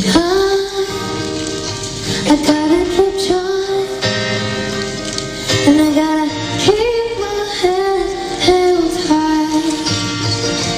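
A young girl singing solo in long held notes to her own acoustic guitar strumming, in a live concert recording.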